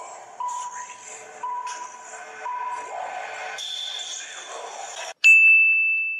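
Countdown timer beeping about once a second over background music, then a loud, long steady beep near the end as the countdown runs out.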